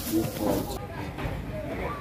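People talking in the background, with a brief scraping hiss in the first second as a knife blade scrapes diced carrot across a wooden chopping board.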